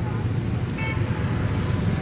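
Road traffic going by, with motor scooters passing close and a steady low rumble of engines and tyres. A brief high horn beep sounds a little under a second in.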